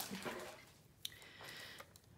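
Faint rustle of paper and wax paper being handled and laid on a paper trimmer, with a single light tap about a second in.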